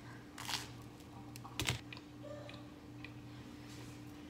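Handling noise: a soft rustle about half a second in and a sharp click about a second and a half in, with a few fainter ticks, over a steady low hum.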